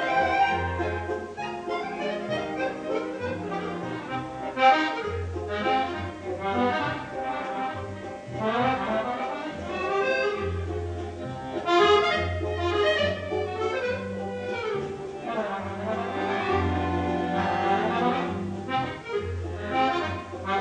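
Piano accordion playing a solo melody in quick runs of notes, over an orchestra's accompaniment with a steady bass underneath.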